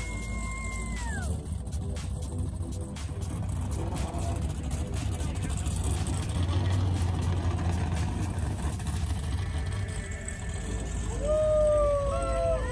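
Powerboat engines idling alongside a dock, a low steady rumble that swells about halfway through. A drawn-out cheering whoop near the start and another shout near the end.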